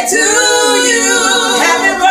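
A cappella vocal group singing in harmony, voices only, holding notes and moving between chords.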